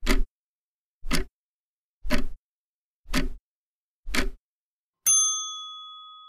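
Countdown timer sound effect: five clock ticks, one a second, then a single bell ding that rings on and fades, marking the end of the time to answer.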